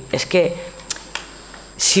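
A woman speaking Catalan into a microphone, then a pause of about a second and a half with two faint clicks in it, before she starts speaking again near the end.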